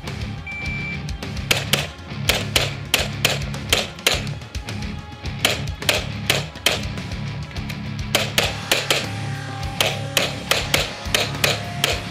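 A short electronic shot-timer beep, then a long string of rapid pistol shots from a Grand Power X-Calibur, often in quick pairs, with brief pauses between target arrays. Rock music with electric guitar runs underneath.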